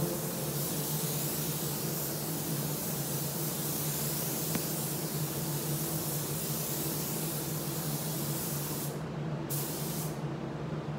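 Gravity-feed spray gun hissing steadily as it sprays clear lacquer over a painted motorcycle fuel tank, with a steady low hum underneath. The hiss thins briefly about nine seconds in.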